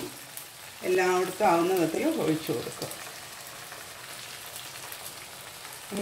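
Minced meat masala frying in a nonstick pan on the heat, a steady soft sizzle that is heard on its own through the second half, after a voice.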